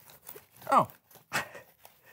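A small foam paint roller rolled back and forth over a large sheet of paper, giving faint, short rustling strokes, with a brief spoken 'Oh' in the middle.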